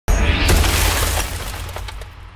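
Record label's logo-intro sound effect: a sudden loud hit with a deep rumble and a wide wash of noise, with a couple of sharper cracks inside it, slowly fading away.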